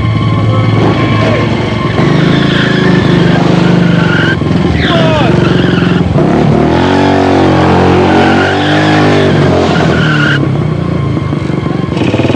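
Several motorcycle engines running and revving loudly together. Their pitch climbs and falls back in a long rev in the middle, with a brief falling squeal about five seconds in.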